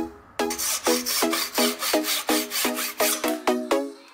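Wooden end of a pencil being rasped down, a rough scraping noise that dies away near the end, over background music with a steady plucked beat.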